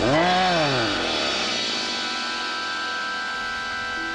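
A dog's snarl from the film soundtrack, one rough call that rises and falls in pitch over about a second and then trails off into a long fading rumble. Steady music tones come in underneath as it fades.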